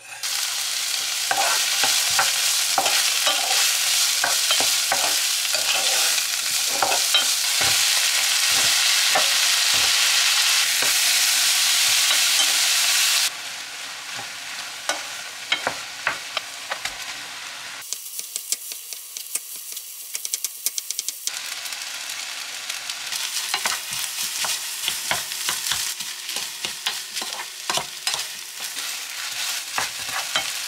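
Diced onion landing in hot oil in a frying pan and sizzling loudly, stirred with a wooden spoon that clicks and scrapes against the pan. About thirteen seconds in the sizzle drops lower, and it goes on with frequent spoon taps as shrimp and rice are stir-fried.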